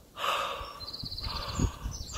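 A man breathing slowly and audibly through an open mouth, two long, even breaths in a row, showing smooth, easy breathing without holding the breath.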